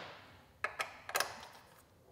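About four light metal clicks from a T-handle Allen key being handled and fitted into a socket-head bolt.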